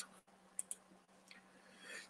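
Near silence with two faint, short clicks a little over half a second in.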